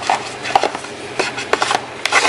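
Small eyeshadow palette cases clicking and scraping against each other and the sides of a small box as they are slid in and stood upright, with a few light knocks spread through.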